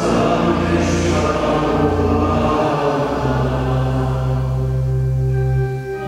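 Voices singing a liturgical chant with organ accompaniment, the organ's low bass notes held long and changing to a new note about halfway through.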